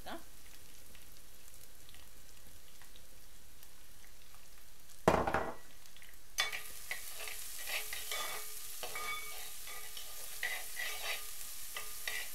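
Chopped onions sizzling in oil in a frying pan, faint at first. About five seconds in there is one loud knock, then a steel spoon stirring and scraping the onions through the pan in quick strokes over louder sizzling.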